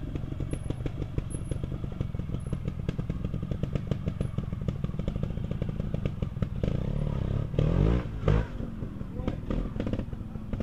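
Trials motorcycle engine running at low revs with a rapid, even firing beat as the rider works through the section. About two-thirds of the way through it is revved hard in a rising burst for about two seconds, then drops back to low revs.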